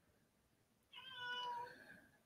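A single faint, cat-like meow about a second in, lasting under a second and dropping slightly in pitch at the end.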